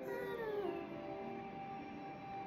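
Ambient background music of steady, held singing-bowl-like tones, with one short pitched call that falls in pitch just after the start.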